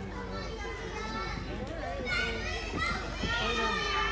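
Indistinct chatter and calling of many children's voices, getting louder and busier about halfway through.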